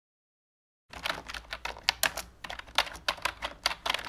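Typing sound effect: keys clacking in quick, irregular strokes, about five or six a second, starting about a second in.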